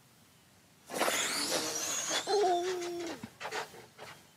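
A pair of RC drag cars launching off the line about a second in: a burst of high motor whine and tyre noise, falling in pitch as the cars run away down the strip, lasting about two seconds. A held 'ooh'-like voice tone comes in over the second half of the run.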